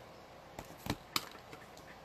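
A few small clicks and a light knock as a clear acrylic stamp block with a mounted rubber stamp is set down on a stamping mat and a marker is picked up. The sharpest click comes just past the middle.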